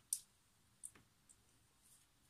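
Four faint, short, sharp clicks over a near-silent room, the first the loudest.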